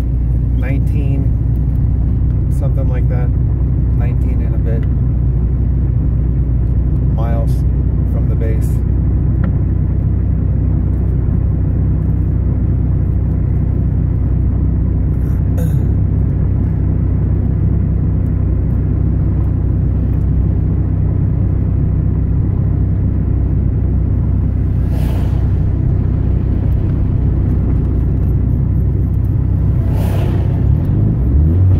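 Steady low rumble heard inside the cabin of a 2001 Saab 9-5 Aero, the car's engine and tyres running on the road during a mountain descent.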